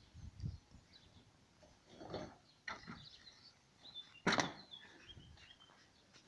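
Quiet scattered knocks and rustles, with one sharp knock about four seconds in. Faint bird chirps in the background.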